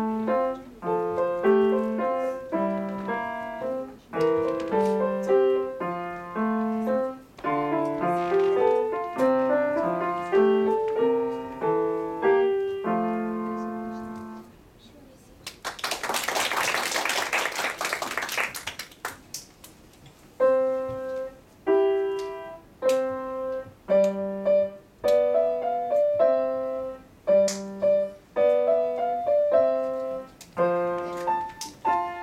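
Solo grand piano playing a classical piece that ends about fourteen seconds in. After a short pause, about three seconds of audience applause, then the piano starts again.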